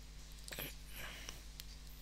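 Quiet recording background: a steady low electrical hum with a few faint, soft noises about half a second and a second in.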